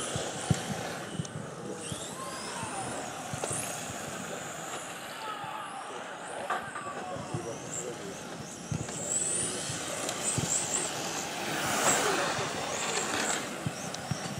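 Brushless electric motor of a 1:10 RC touring car (Leopard 8.5T) whining, its pitch gliding up and down as the car speeds up and slows around the track. A few short sharp knocks are mixed in.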